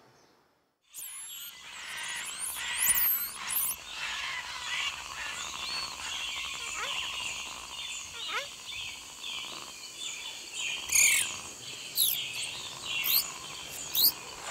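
A dense chorus of birds chirping, whistling and calling, cutting in suddenly about a second in after a moment of silence, with quick rising and falling calls and a few louder ones near the end.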